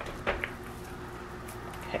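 Hands turning and rubbing seasoned raw pork chops in a glass bowl: faint, soft handling noises with a few light taps.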